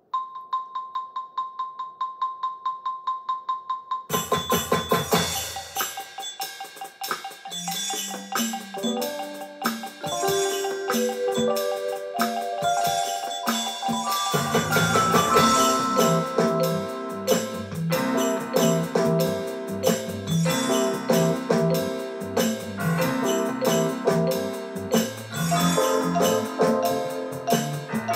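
A click track counts in with steady electronic clicks for about four seconds. Then a digital keyboard's acoustic piano voice plays rhythmic riffs over the continuing click, the music growing fuller about 14 seconds in.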